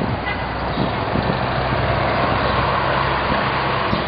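City bus driving past, its engine a steady low hum under a rush of road noise.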